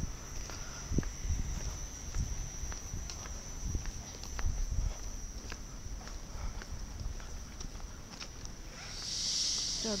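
NS Mat '64 Plan V electric train standing at the platform, giving a steady high whine over a low rumble, with footsteps on the concrete platform coming closer. A hiss swells near the end.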